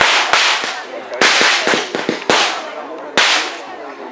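A series of four sharp cracks about a second apart, each followed by a short hissing tail.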